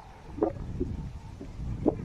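Low rumble of wind on the microphone outdoors, with two short, sharp sounds: one about half a second in and a louder one near the end.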